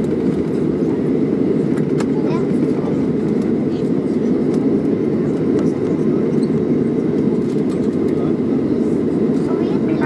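Steady low cabin rumble of a Boeing 737-700 taxiing after landing, its CFM56-7B engines at taxi power, heard from inside the cabin, with a few faint clicks.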